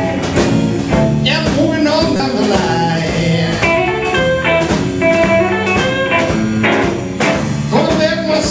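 Blues band playing, with a guitar prominent and some long held notes partway through.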